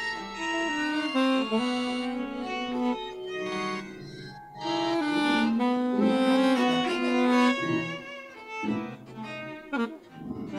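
Freely improvised ensemble music: saxophone and EWI wind-synthesizer lines over keyboard and live electronics. Sustained, reedy notes overlap and step from pitch to pitch, with a brief pitch glide near the end.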